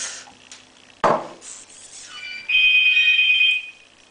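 A phone ringing with a steady electronic tone for about a second and a half from about halfway in, the loudest sound here. About a second in there is a single knock of a knife against a glass jar.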